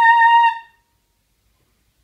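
Saxophone holding a single high final note, which stops about half a second in.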